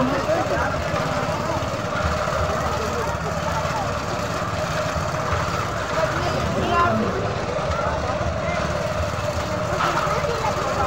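A steady mechanical hum with a low rumble under it, mixed with the chatter and calls of people and children.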